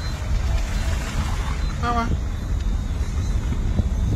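Steady low rumble of wind and road noise on a phone's microphone while travelling along a road, with a short voice call about halfway through.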